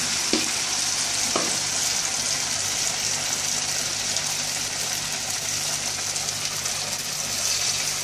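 Batter-coated plantain slices deep-frying in hot oil in a wok: a steady sizzle, with two light knocks in the first second and a half.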